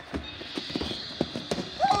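Scuffling and a quick run of dull thumps from a staged fistfight, with clothing rustling as the two grapple on the ground. A voice cries "oh" just before the end.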